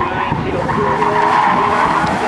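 Toyota GR86's tyres squealing as the car slides hard round a pylon, with its 2.4-litre flat-four engine running under load. The squeal grows louder about a second in.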